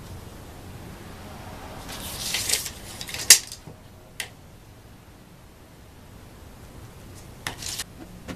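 Steel tape measure being handled on a plywood sheet: the blade rasps as it slides out or back a couple of seconds in, then a sharp snap a little after three seconds and a smaller click about a second later, with another brief rasp of the blade near the end.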